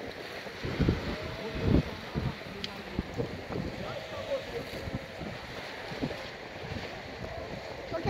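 Wind buffeting the microphone over the steady wash of sea surf, with faint voices in the background.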